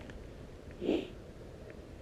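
A single short, soft breath through the nose, about a second in, over a faint steady background hiss.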